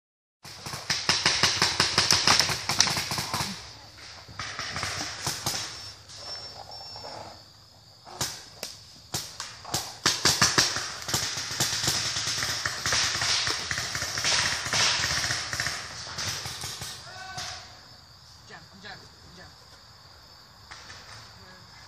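Paintball markers firing in rapid strings of sharp cracks, heaviest in the first few seconds and again in the middle, thinning out near the end.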